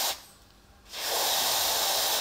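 Aerosol freeze spray hissing out of its nozzle tube onto an FPGA chip to chill it: one burst stops just after the start, and a second burst begins about a second in.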